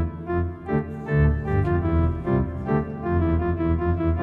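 Organ voice of the Pipe Organ iPad app playing back a just-recorded keyboard performance: sustained chords over a strong bass, the notes changing every half second to a second.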